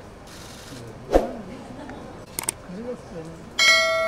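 Video-overlay subscribe sound effect: a sharp mouse-style click about a second in, two quick clicks a little before halfway through the last two seconds, then a bright bell ding near the end that rings on and fades. Low voices murmur underneath.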